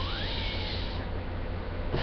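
Room tone: a steady low hum with faint hiss.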